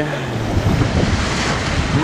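Whitewater rushing and churning steadily around a river-rapids raft as it runs down the channel.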